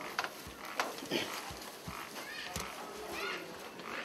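Faint voices or short calls in the background, with scattered light knocks and bumps as a woven mat is handled against a thatched wall.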